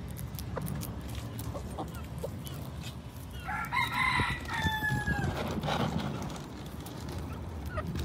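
A rooster crows once, starting about three and a half seconds in and lasting under two seconds, its pitch dropping at the end. Around it are scattered sharp clicks of chickens pecking at food on gravel.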